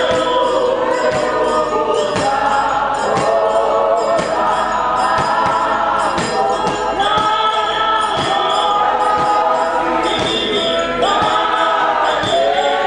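A choir singing in harmony, several voices holding long notes and sliding between them, over a faint steady beat.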